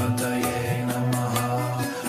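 Devotional music: the Ganesha mantra chanted in long, held low notes over steady accompaniment with light repeated percussive strikes.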